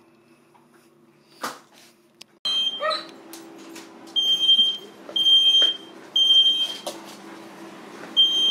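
Smoke alarm beeping: three high, steady beeps about a second apart, starting about halfway in. It has been set off by grease from the turkey burning on the bottom of the oven.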